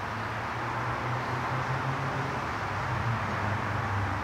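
A steady low mechanical hum, edging slightly louder toward the end.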